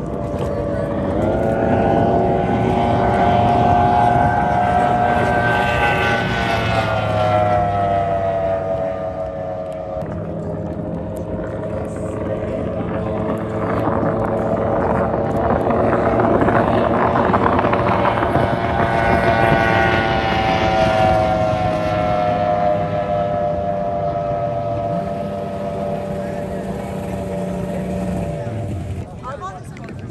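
Race boat engine at full throttle on distant high-speed passes, its note rising and then falling in pitch as the boat goes by, twice.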